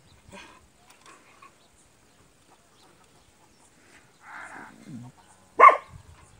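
A German Shepherd barking once, short and loud, near the end, after a few faint scattered sounds and a softer noise a second earlier.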